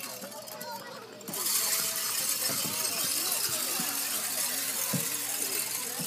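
Faint voices of people talking at a distance, with a steady background hiss that comes up about a second in; no clear sound from the play equipment.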